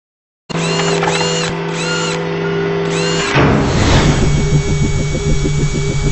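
Logo-intro sound design: after a brief silence, steady tones carry four whirring whines that rise and fall, like a drill spinning up and down. About three seconds in, a whoosh leads into a fast rhythmic musical pulse.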